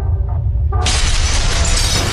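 Animated logo-intro sound effects over a deep low rumble. About a second in comes a sudden loud crash of shattering glass and debris, which keeps crackling as the pieces scatter.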